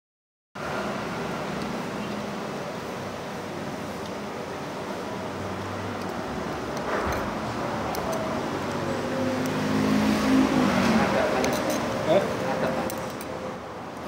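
Steady rushing background noise with indistinct voices talking, the voices loudest about ten seconds in, and a short clink about twelve seconds in.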